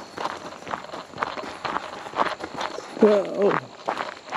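Footsteps crunching on a gravel trail scattered with dry leaves, at a walking pace. A short vocal sound, a voice or laugh, comes about three seconds in.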